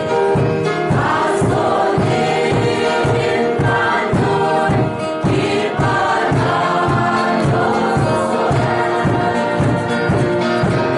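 Church choir of men and women singing a hymn together, over accompaniment that keeps a steady beat of about two a second.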